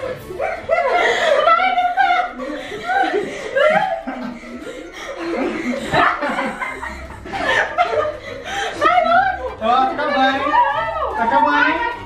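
People laughing and chuckling during a partner-yoga attempt, with no clear words.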